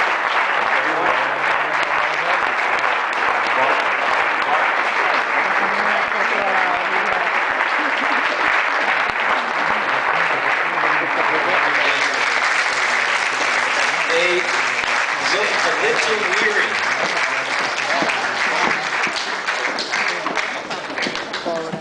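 Audience applauding in a hall, steady clapping with voices heard among it.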